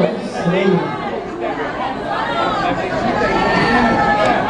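Speech: a man talking into a microphone over the PA, with crowd chatter underneath.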